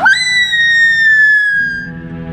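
A girl's long, high-pitched scream that starts suddenly and slides slowly down in pitch, ending near the end. A low, steady music drone comes in about halfway through.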